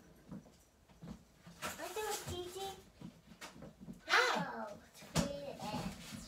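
Unclear voices of a woman and a young child in a small room, with quiet gaps between; a sudden loud, high-pitched voice about four seconds in.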